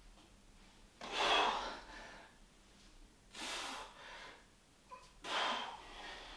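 A man's forceful, effortful breaths during dumbbell curls and tricep kickbacks: three hard exhales, about two seconds apart.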